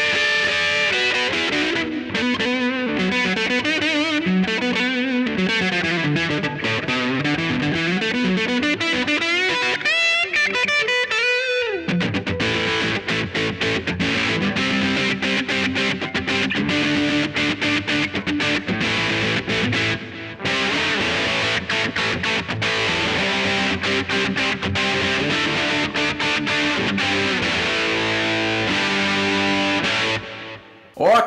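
Electric guitar played hard through a ProCo RAT distortion pedal with its distortion knob set low, giving a lightly overdriven tone whose grit follows how hard the strings are picked. It opens with single-note lines with bends and vibrato, then moves to chords from about twelve seconds in.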